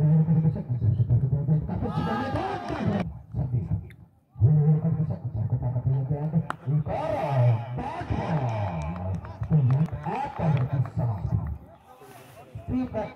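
A man's voice talking almost without a break, with one short pause about four seconds in.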